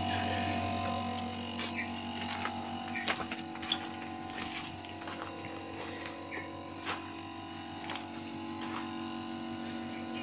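LG split air conditioner outdoor unit running with a steady hum, under test with a clamp meter and refrigerant gauges after its condenser was replaced; a few faint clicks sound over it.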